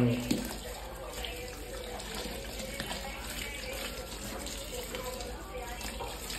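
Water from a garden hose pouring steadily into a plastic bucket packed with leafy moringa branches, a continuous rushing splash as the leaves are washed.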